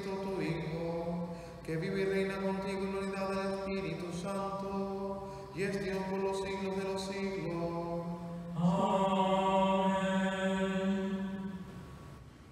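A man's voice chanting a liturgical prayer on long held notes, in phrases a few seconds long. The last phrase, starting near the ninth second, is the loudest and fades out near the end.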